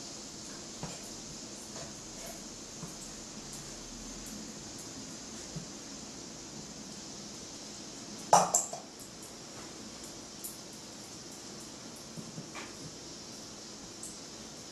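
Light clinks of stirring in a stainless-steel pot, then one louder metallic clank about eight seconds in as its lid is set on, over a steady low hiss.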